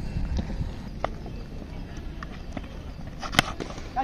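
Steady low outdoor background noise without speech, with a few faint clicks and one sharp click about three and a half seconds in.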